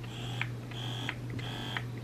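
Wearable electric breast pump (S12) motor running on its lowest suction setting, level 1: a quiet buzz in three short pulses, repeating about every 0.7 s as it cycles suction.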